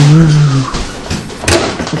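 A short wordless vocal sound from a man, then a sharp click about one and a half seconds in as the microwave oven's door is popped open.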